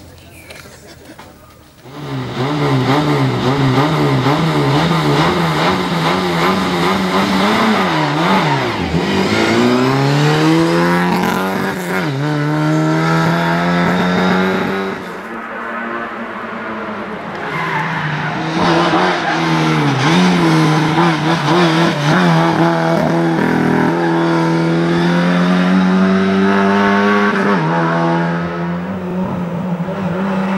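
Lada 2107 rally car's four-cylinder engine driven hard, starting about two seconds in. It runs at high revs with a wavering pitch, dropping and climbing again several times through gear changes and corners.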